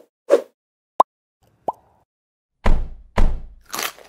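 Intro-animation sound effects: two short swishes at the start, two brief blips about a second apart, then two heavy thuds and a short noisy burst near the end.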